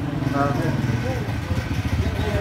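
An engine running steadily, a low pulsing rumble under a man's brief talk.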